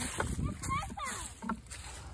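Footsteps and rustling in dry fallen leaves with handling rumble on a phone microphone, and a child's voice speaking faintly about half a second in.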